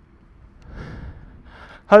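A man breathing out heavily, two soft rushing breaths after exertion, before he starts to speak near the end.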